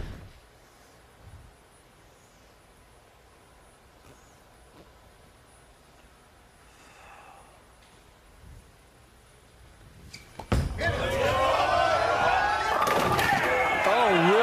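Quiet bowling-centre ambience. About ten seconds in, a bowling ball crashes into the pins, and a packed crowd immediately breaks into loud cheering and shouting.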